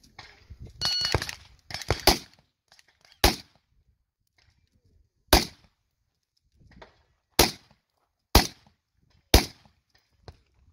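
Pistol-caliber carbine firing a string of single shots at a match stage: a quick cluster of reports in the first two seconds, then single shots about one to two seconds apart.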